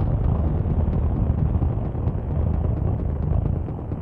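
Electronic dance music with a dense, rumbling wash of noise swelling over the beat, which is faint beneath it. The noise cuts off abruptly near the end as the regular beat comes back through.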